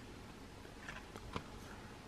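Faint handling of laminated plastic trading cards, with a few soft clicks around the middle as the next card is taken up.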